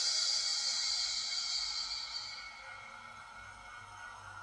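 A man's long, breathy out-breath through the mouth, released after holding a deep breath, fading away over about three seconds.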